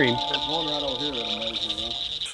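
Night chorus of insects and frogs: a steady high-pitched trill, with low, indistinct voices over it.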